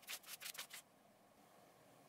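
Paper pages of a paperback book being leafed through by hand: a quick run of soft rustles in the first second, then only faint hiss.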